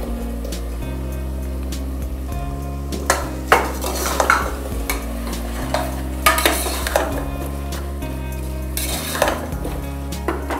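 A metal spoon stirring baby potatoes into a sizzling masala in an aluminium pressure cooker, with scrapes and clinks against the pot from about three seconds in. Background music with sustained notes plays underneath.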